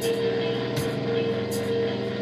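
Improvised psychedelic rock jam: a droning, held electric guitar and bass note with cymbal hits about every three-quarters of a second.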